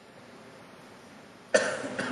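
Quiet, steady hall ambience, then about one and a half seconds in a single sudden cough that rings on with the long reverberation of a large hall.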